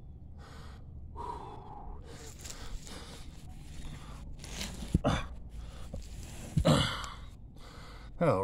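A man breathing hard in heavy gasps, with two short straining grunts about five and about seven seconds in, from the effort of heaving a toppled gravestone back up onto its base.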